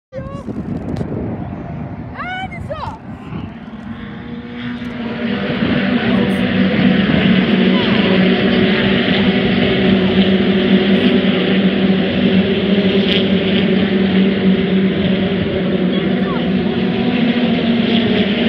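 British Touring Car racing engines running on the circuit: a loud, steady drone that builds up about five seconds in and holds its pitch as the cars go by.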